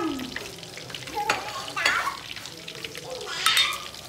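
Catfish pieces frying in hot oil, a steady sizzle, with a few sharp knocks of utensils against the pan or bowl.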